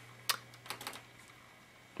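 Keys clicking on a PowerBook G4 laptop keyboard: one sharp keystroke, then a quick run of several more about a second in.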